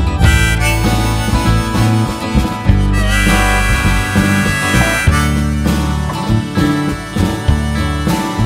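Blues song instrumental passage with a harmonica playing the lead over guitar and bass, holding one long note in the middle.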